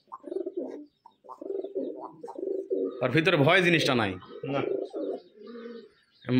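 Domestic pigeons cooing in a run of short, low notes, broken about halfway through by a man's voice.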